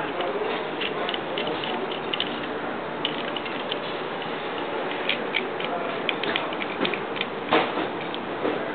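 Small clicks and ticks of metal and plastic parts as the knob on a Patty-O-Matic patty machine's knockout arm is turned and the knockout cup fitted by hand, over a steady hiss. The clicks come thicker in the second half, with the loudest knock near the end.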